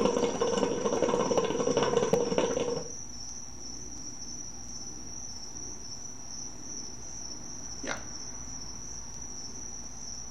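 Hookah water bowl bubbling rapidly as smoke is drawn through the hose, for just under three seconds, then stopping.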